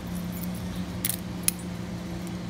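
Brass keys clinking as a key is drawn out of a brass profile lock cylinder and handled, with two sharp metallic clicks about a second in and halfway through, the second the louder. A steady low hum runs underneath.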